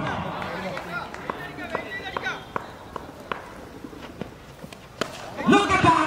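Open-air cricket ground with faint distant voices and a few sharp knocks as a delivery is bowled and a tennis ball is struck by a bat, the clearest knock about five seconds in. A man's voice comes in near the end.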